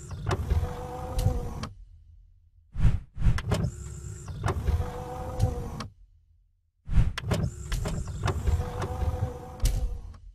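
Motorised whirring sound effect, like an electric window or sliding panel, played three times. Each run lasts about three seconds, starts with a sharp click and holds a steady hum, with short silences between runs.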